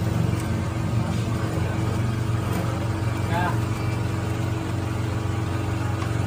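A steady low machine hum, with one short spoken word about halfway through.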